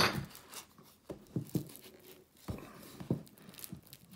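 Braided rope rustling and scraping as it is worked by hand, the splice tail being drawn through the braid: a scatter of short, faint scrapes and soft clicks at irregular intervals.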